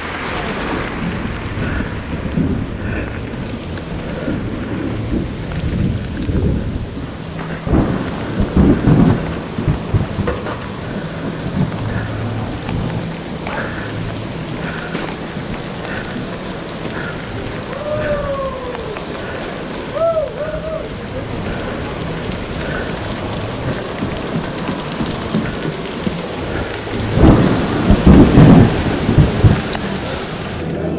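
Steady heavy rain in a thunderstorm, with a rumble of thunder about eight seconds in and a louder one near the end.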